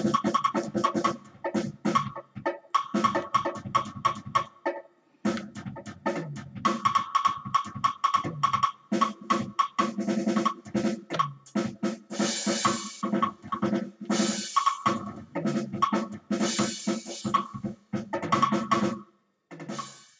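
Rapid, irregular drum-kit hits played by a PC MIDI player and triggered by hands moving around a 360-degree proximity sensor. The nearer the hand, the louder the notes, and its direction changes which notes sound. Hissy cymbal-like crashes come in a few times in the second half, and the hits stop shortly before the end.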